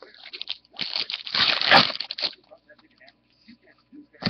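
A foil trading-card pack wrapper torn open and crinkled by hand: one rustling, crackling burst about a second and a half long, starting about a second in, with lighter crinkles around it.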